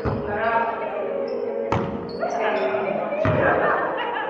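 A volleyball being struck during a rally in a gym hall: three sharp smacks about a second and a half apart, echoing in the hall, with short high shoe squeaks on the court floor and players' voices.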